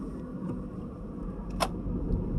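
Steady low road and engine rumble heard inside a moving car's cabin, with a single sharp click about one and a half seconds in.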